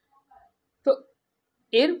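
A man's voice: one brief, short vocal sound about a second in, like a clipped hum or hiccup, then his speech begins near the end.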